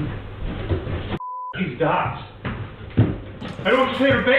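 Indistinct voices with a short single-tone censor bleep about a second in, the other sound muted for its length.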